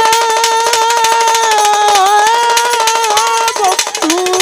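Live Baul folk music with violin: one long held note at a steady pitch, with a slight dip about halfway, over fast clicking percussion. A lower melodic phrase starts near the end.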